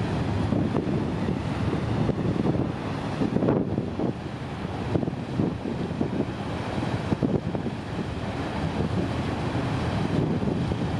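Wind buffeting the microphone on the open stern of a ferry under way, over a steady low rumble of the moving boat and the rush of its churning wake.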